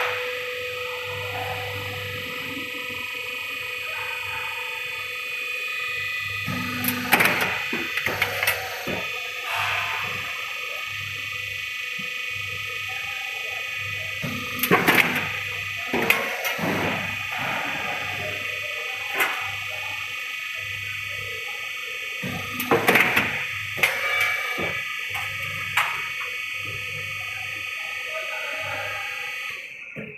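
Steel siding roll forming machine running with a steady hum. Clusters of loud clanks come about every eight seconds, three times, as its cut-off press shears each formed ship-lap panel and the panel is taken off.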